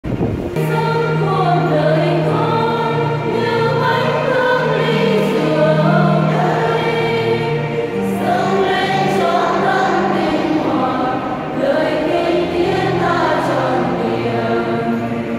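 Women's church choir singing a hymn together, starting about half a second in, over a keyboard accompaniment holding steady low notes.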